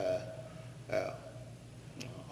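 A pause in a man's lecture speech: a word tails off at the start, and a brief throaty vocal sound comes about a second in. Steady recording hum and hiss run under both.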